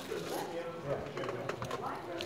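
Indistinct murmur of visitors talking in a palace hall, with a few light footstep clicks.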